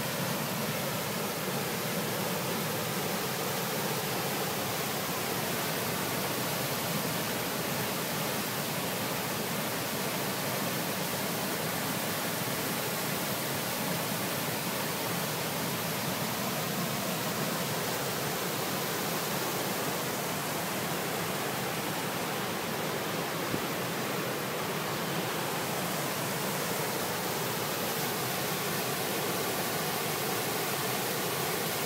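Steady rush of water pouring through the open sluice gates and over the spillway of a small stone dam into foaming whitewater.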